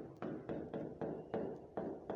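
Stylus tapping on the screen of an interactive touchscreen display while letters are written: a run of about six light, irregular taps.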